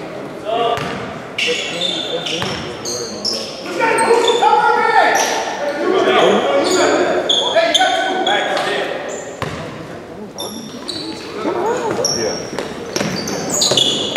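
A basketball dribbled on a hardwood gym floor, with repeated sharp bounces, sneakers squeaking and players' and coaches' shouts, all echoing in a large, mostly empty gym.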